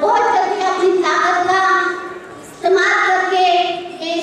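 A woman singing solo into a microphone, two long sung phrases with held notes and a short breath between them about two seconds in.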